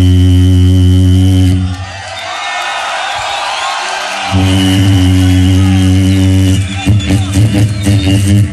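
A beatboxer's deep, sustained vocal bass drone through the stage PA, a bass drop held for about two seconds, then broken off while a crowd cheers and screams, then held again for about two more seconds. Quick percussive beatbox hits follow near the end.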